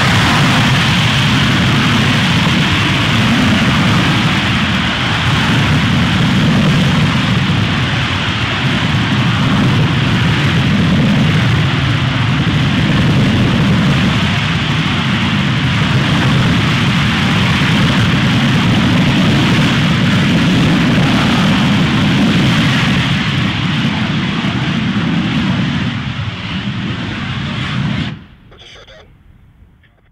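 The Morpheus lander's liquid-oxygen/methane rocket engine firing steadily in a long hot-fire burn, its low rumble swelling and easing every few seconds. It cuts off abruptly about two seconds before the end, leaving only a faint tail.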